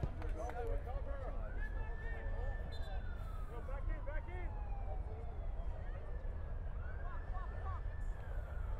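An emergency-vehicle siren wailing: its pitch rises, holds, slowly falls, then rises again near the end. Scattered shouts from players on the pitch and a steady low rumble run underneath.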